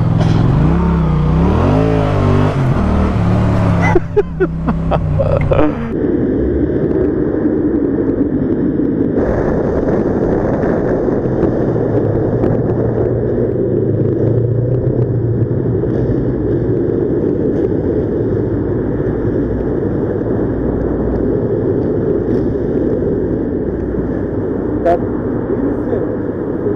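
Motorcycle engine running on the move, its pitch rising and falling over the first few seconds. After a few clicks, a steady loud rumble of engine and road noise runs unchanged to the end.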